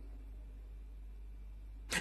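A pause in a man's speech, leaving only a faint steady low hum and room tone; his voice comes back right at the end.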